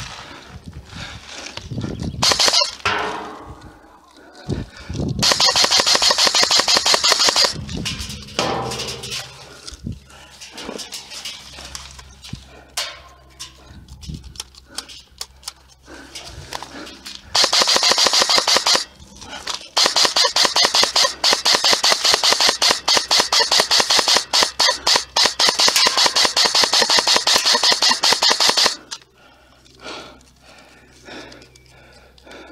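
Airsoft electric rifle firing fully automatic: three rapid bursts of evenly spaced shots, a short one a few seconds in, another past the middle, then a long run of fire lasting about nine seconds that stops shortly before the end.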